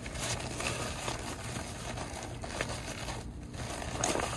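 Nylon fabric of a MoonShade awning and its carry bag rustling and crinkling as they are handled and pulled out, with a few short scrapes.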